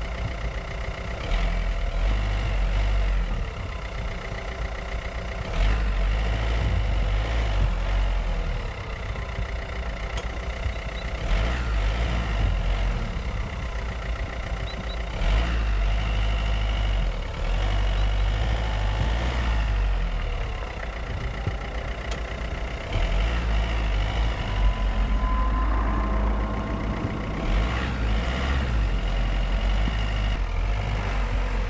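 Fiat 500L's engine revving in repeated surges of a few seconds each as its wheels spin in deep snow: the car is stuck and cannot get traction.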